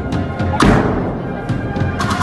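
An agrupación musical, a marching band of bugles, cornets and drums, playing a processional march. Drum strokes fall steadily, with one heavy crashing hit a little after half a second in.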